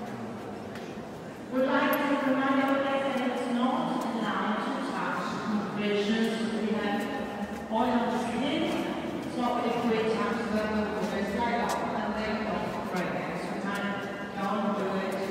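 A man's voice speaking, starting about a second and a half in after a quieter opening and going on through the rest.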